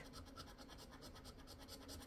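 Faint, rapid scraping strokes of a scratch-off lottery ticket's coating being rubbed away to uncover a symbol.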